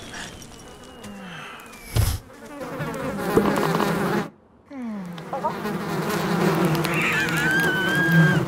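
Cartoon sound effect of a swarm of insects buzzing, after a sharp thud about two seconds in. The buzz cuts out for a moment near the middle and comes back with a falling swoop, then carries on steadily, with some wavering squeaky tones near the end.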